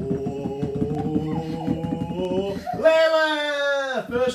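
A voice holding a long, drawn-out note, like an exaggerated 'ooooh', that falls slightly in pitch and cuts off suddenly at the end. Before it comes a steadier, buzzier held tone.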